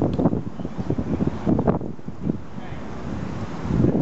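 Wind buffeting the microphone in an irregular low rumble that comes and goes in gusts, with indistinct voices underneath.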